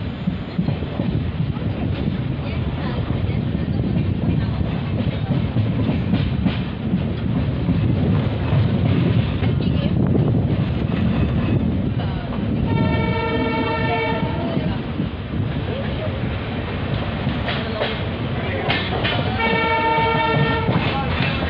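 Passenger train running at speed, with a steady low rumble of wheels on the track. The WDP4D diesel locomotive's multi-tone horn sounds twice: once for about a second and a half past the middle, and again near the end.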